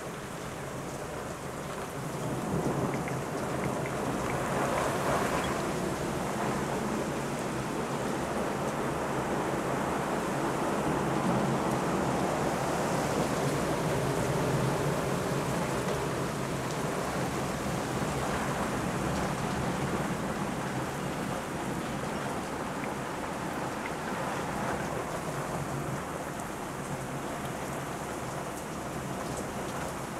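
Heavy rain and wind of a severe thunderstorm, a continuous rushing that swells about two seconds in and stays heavy.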